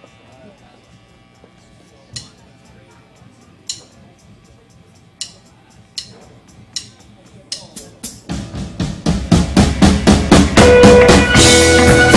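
A live rock band starting a song: a few sharp drum strokes, spaced out and then coming faster, and about eight seconds in the full band of drum kit, guitars and bass comes in loud with a fast, steady beat.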